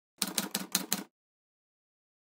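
Sound effect for a logo reveal: five quick, sharp clicking strokes packed into about a second.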